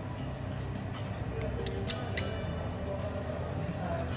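Four small, sharp metallic clicks, about a second and a half in and spread over about a second, as a precision screwdriver works a tiny screw on a metal bracket inside an iPhone 12 Pro. They sit over a steady low hum.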